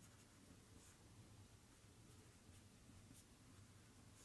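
Faint strokes of a marker pen writing on a whiteboard, a few short scratchy strokes over near silence and a low room hum.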